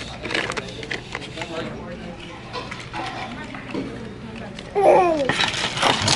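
Indistinct children's voices and low speech, with scattered small clicks; a louder voice slides up and down in pitch about five seconds in.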